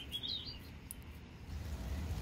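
A faint, brief bird chirp near the start, over a low rumble that grows louder toward the end.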